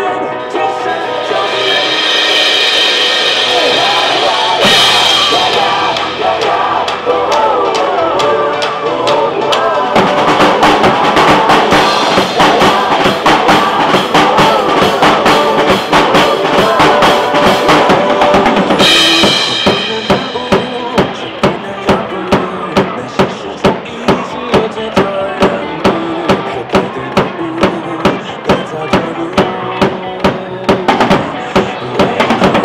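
Acoustic drum kit played live along to a recorded pop backing track: kick, snare and cymbals over the song. The drumming gets busier about a third of the way in, then settles in the last third into a steady, evenly accented beat.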